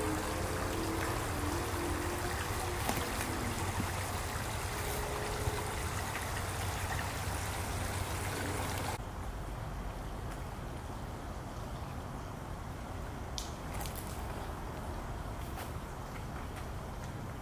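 Steady outdoor background noise with a water-like hiss, like a creek trickling. It drops abruptly about nine seconds in, and a few faint short clicks come near the end.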